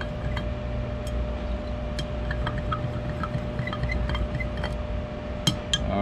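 Metal spoon stirring heated liquid soft-bait plastic in a glass measuring cup, with scattered light clinks of the spoon against the glass. A steady low hum runs underneath.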